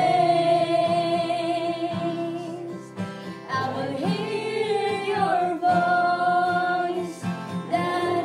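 A woman singing a slow gospel worship song in long held notes, with a short pause between phrases about three seconds in.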